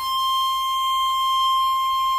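Soprano saxophone holding one high note alone, steady in pitch and loudness, with a pure, almost whistle-like tone.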